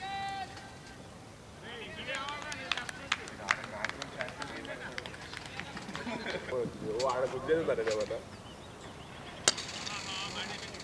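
Distant shouts and chatter of cricket players across the field, in two stretches, with scattered faint clicks and one sharper click near the end.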